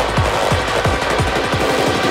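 Drum and bass mix in a build-up. A deep kick drum, each hit dropping in pitch, repeats faster and faster into a rapid roll over a dense, noisy synth layer.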